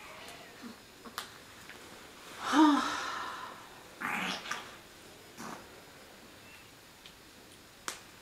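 A short voiced sound with a bending pitch about two and a half seconds in, then a breathier vocal sound a moment later, among a few faint clicks and rustles from the clothing being handled.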